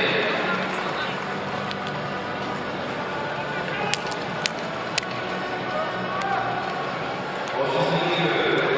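Indoor arena background of indistinct voices with music, and three sharp clicks about halfway through.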